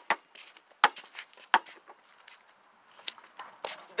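Basketball being dribbled on a concrete court: sharp bounces under a second apart, a pause of about a second and a half, then two more bounces.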